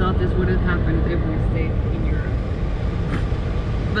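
Steady low rumble of a Toyota Land Cruiser 76 Series heard from inside its cab, with voices talking faintly over it.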